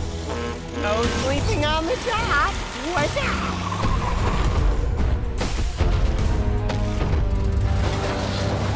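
Cartoon soundtrack: background music under wavering, voice-like cries in the first few seconds, a falling glide, then a couple of sharp thuds about two-thirds of the way in.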